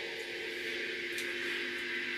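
Steady electrical hum made of several held tones, with a hiss over it and a faint click about a second in.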